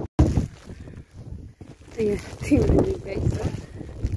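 Wind rumbling on the microphone while someone walks through fresh snow, with voices about halfway through.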